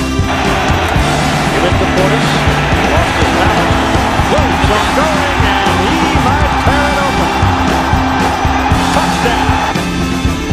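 Rock music over the crowd noise of a college football game broadcast, a loud roar with shouts in it, which cuts off shortly before the end.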